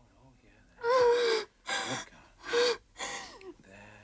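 A woman crying in gasping sobs: four loud, breathy sobs in quick succession, starting about a second in.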